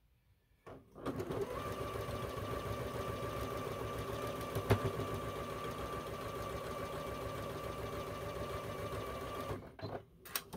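Electric domestic sewing machine stitching a seam at a steady speed. It starts about a second in and stops just before the end, with one sharp click about halfway through.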